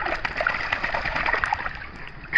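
Wet golden retriever shaking water from its head and coat, the spray of droplets splashing down into the pool water. The splatter starts suddenly and dies away near the end.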